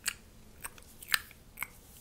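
Close-miked mouth sounds: sharp wet clicks at about two a second, the loudest about a second in.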